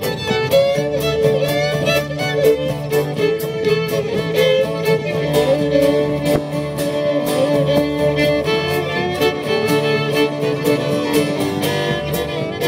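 Old-time string band playing a fiddle tune: fiddles carry the melody over a steady strummed guitar rhythm.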